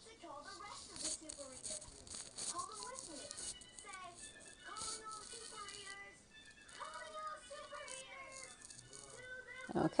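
Faint, low-level talking, with dry rattling or crinkling sounds over it.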